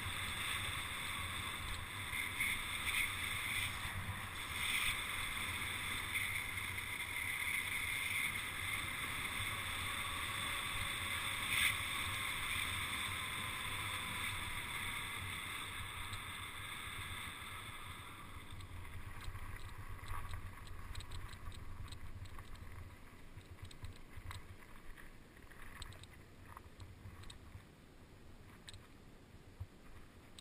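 Wind rushing over the camera microphone with tyre noise from a mountain bike moving fast down a paved road. The rush fades from a little past halfway as the bike slows, and scattered ticks come in near the end as it rolls onto gravel.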